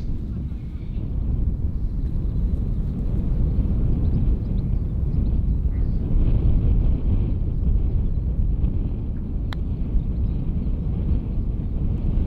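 Wind buffeting the microphone as a steady low rumble outdoors, with a single sharp click about nine and a half seconds in: a putter striking a golf ball.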